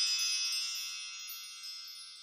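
A high, shimmering chime ringing and slowly fading away: the closing sting of the outro music.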